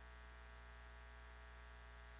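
Near silence in a pause of speech, holding only a faint, steady electrical mains hum.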